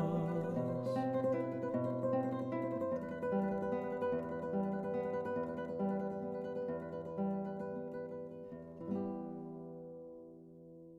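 Solo acoustic guitar plucking the closing phrase of a song. Near the end it strikes a final chord that rings out and fades away.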